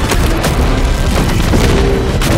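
Sound-designed deep booms and hits layered over music, loud and dense, with a heavy low rumble and repeated sharp impacts.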